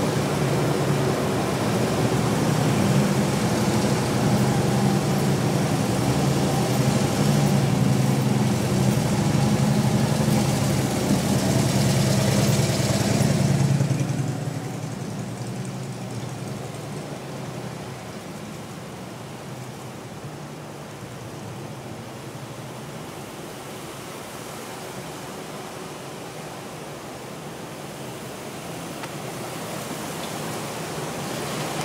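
Motorcade vehicles passing slowly at close range, their engines running loud and low for about the first fourteen seconds. The sound then drops suddenly to a quieter, steady rushing noise as dark SUVs roll by.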